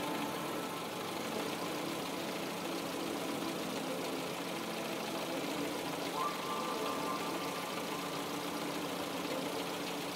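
Car engine idling steadily, with a low, even running sound and some steady tones over it.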